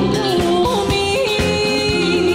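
A woman singing a Taiwanese-language song over live band accompaniment, holding long notes with a slight vibrato.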